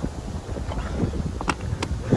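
Wind buffeting a handheld phone's microphone while moving, a steady low rumble, with two short sharp clicks about a second and a half in.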